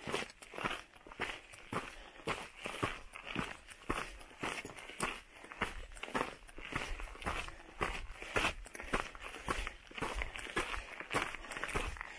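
Footsteps crunching on a gravelly, rocky mountain trail at a steady walking pace, about two steps a second, with a low rumble coming in about halfway through.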